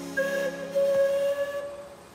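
A steam-train whistle from the cartoon's soundtrack gives one long, steady blast that fades out near the end, over soft background music.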